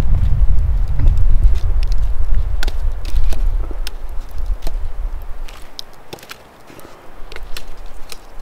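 Burning logs being shifted by a gloved hand in a campfire of embers, with scattered sharp knocks and crackles of wood, over a low rumble that fades about five seconds in.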